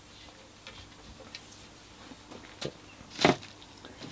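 Wooden bows being handled in a rack: a few faint clicks, then one sharper knock about three seconds in.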